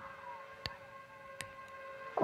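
Faint footsteps on a gravel path at a walking pace: three sharp steps about three-quarters of a second apart, over a faint steady hum.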